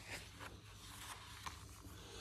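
Faint rustle and scrape of a paper picture-book page being turned, loudest just after the start.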